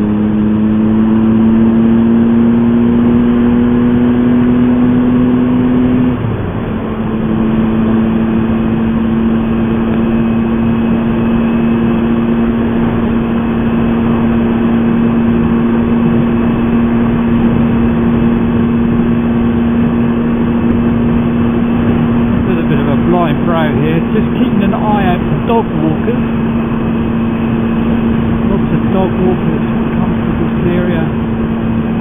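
Motorcycle engine running at road speed under wind and road noise. Its note climbs slowly, eases off briefly about six seconds in, then holds steady.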